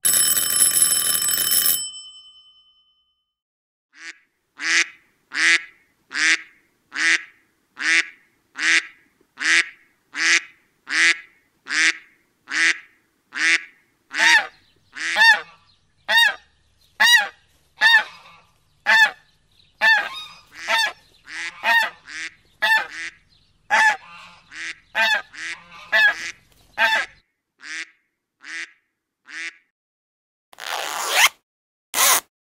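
A doorbell ringing for about two seconds, then ducks quacking: a regular run of single quacks, about one and a half a second, that thickens into overlapping quacks from several birds in the second half and stops shortly before the end.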